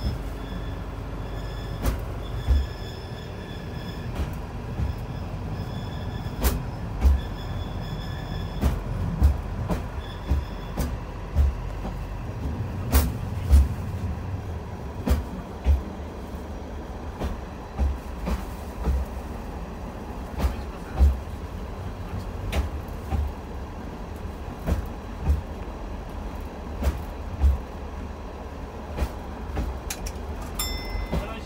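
Asa Seaside Railway DMV, a minibus built to run on rails, travelling along the track in rail mode: a steady low engine-and-running rumble with sharp clacks, mostly in pairs about half a second apart, as its wheels cross rail joints every second or two.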